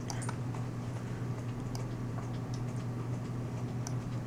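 A steady low electrical hum with faint, light clicks scattered through it, a few per second at most.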